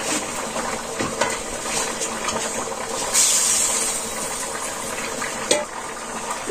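Fish curry bubbling and sizzling in a metal karahi over a wood fire as fried fish pieces are added from a steel bowl: a steady bubbling hiss, a louder burst of sizzle about three seconds in, and a few light clinks of the bowl.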